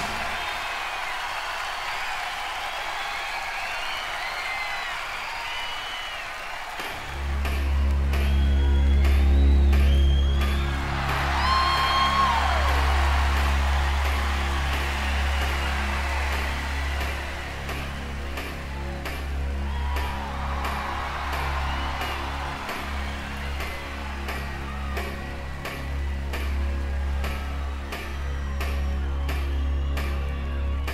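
Live concert recording played from a vinyl record: a crowd cheers and whistles, then about seven seconds in the band starts a song with a heavy bass and a steady drum beat while the cheering continues.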